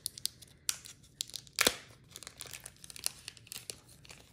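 Crinkling of a small plastic pouch and its wrapping being torn open and handled: a string of small crackles with one sharper tear about a second and a half in.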